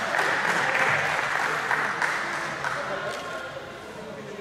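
Audience applauding, fading away gradually.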